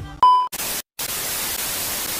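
A short, loud, high test-tone beep, then TV static hiss with a brief drop-out just under a second in: a television-static glitch transition sound effect.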